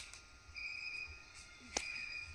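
An insect's buzzy call, faint and repeating roughly once a second, each call lasting about two-thirds of a second. Two sharp clicks are the loudest sounds, one at the very start and one near the end.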